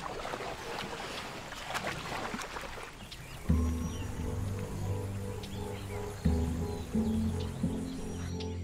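Water sloshing and splashing as an Asian elephant calf swims through shallow water among the adults. About three and a half seconds in, music with sustained low notes comes in and carries on.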